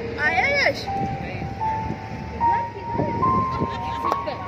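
Live concert music heard from far back in an open-air crowd. A single held lead note climbs step by step, about four times, after a short arching, wavering phrase near the start.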